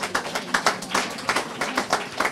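Applause from a small group of people clapping their hands: sharp, uneven claps, several a second.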